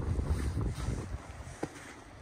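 Wind buffeting the microphone in gusts, dying down over the second half, with one short click near the end.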